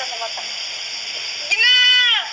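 A single high-pitched vocal squeal about one and a half seconds in, held at a near-steady pitch for about half a second.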